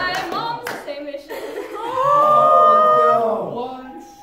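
A small group clapping and cheering with excited high-pitched shouts. The clapping thins out within the first second, then several voices join in one long, loud cheer about two seconds in that fades before the end.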